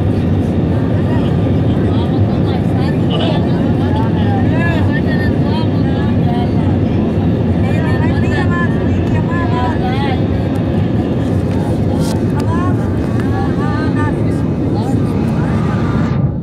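Airliner cabin noise heard from a window seat: a loud, steady rumble of the jet engines and rushing air. From about four seconds in, voices talk over it.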